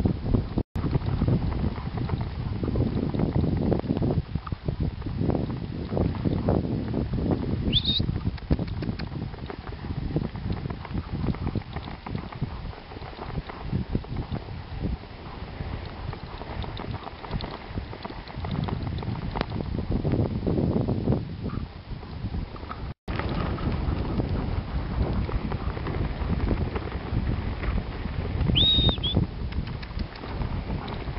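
Wind buffeting the microphone over a low, uneven rumble of a dog-drawn rig moving along a snowy track behind a team of four Alaskan Malamutes. Two short high squeaks, about eight seconds in and near the end.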